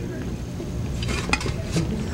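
Plates and cutlery clinking and scraping as food is served onto a plate, with a few sharp clicks a little past halfway and one more near the end, over a low steady room rumble.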